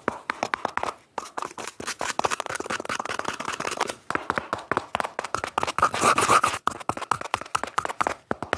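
Fast, aggressive ASMR scratching and tapping on a cardboard tube held right up to the camera: a dense run of quick scratches and taps with brief lulls, loudest about six seconds in.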